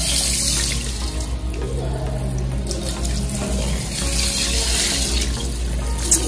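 Salon shampoo-basin sprayer running, water spraying onto wet hair and splashing into the basin as the hair is rinsed: a steady hiss.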